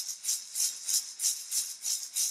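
Hand rattle shaken in a steady rhythm, about four shakes a second.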